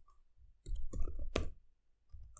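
Computer keyboard keys being typed: a quick run of clicks starting about half a second in, the last one the loudest.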